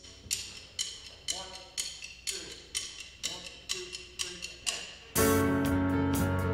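A worship band's song intro: about ten sharp percussive clicks, evenly two a second, keep time, then the full band, with strummed guitar, comes in loudly about five seconds in.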